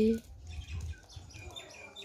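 A woman's voice finishing a word, then a quiet pause with only faint light ticks and room noise.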